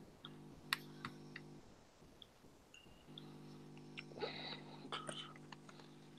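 Low, steady electrical hum on a video-call audio line, cutting out for about a second and a half partway through, while a participant's microphone is faulty. Scattered sharp clicks run through it, and a brief faint burst of noise comes about four seconds in.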